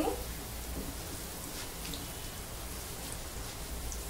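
Hot mustard oil sizzling steadily in a kadhai as whole dried red chillies, garlic and cumin seeds are roasted in it for a tadka.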